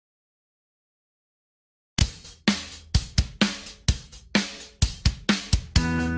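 About two seconds of silence, then the drum-kit intro of a recorded children's song: kick, snare and hi-hat playing a steady beat, with the rest of the band starting to come in right at the end.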